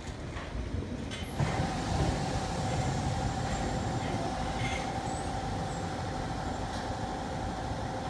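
Elevated monorail train running on its concrete guideway: a steady rumble with a level electric whine, growing louder about a second and a half in as the train comes in toward the station.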